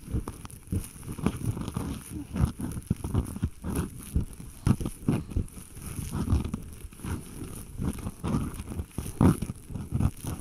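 ASMR ear cleaning: an ear pick scraping and rubbing close inside the listener's ear, a run of irregular scratches and rustles several times a second.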